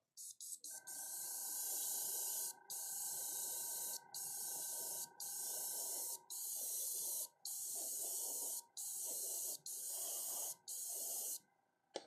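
Gravity-feed airbrush spraying in a run of about nine bursts of hiss, each about a second long, with short breaks between them. The first burst starts a little under a second in and the last ends just before the end.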